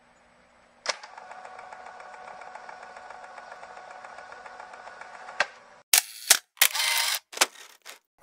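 Intro sound effects: a steady droning tone for about five seconds, then a quick run of sharp, loud clicks and short noisy bursts.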